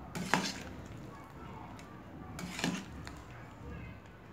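A spoon clanking against the side of a metal cooking pot twice, about two and a half seconds apart, the first knock the louder, as meatballs sitting in water are scooped.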